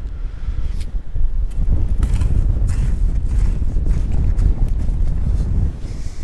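Wind buffeting the microphone: a loud, steady low rumble, broken by a few brief knocks and scrapes.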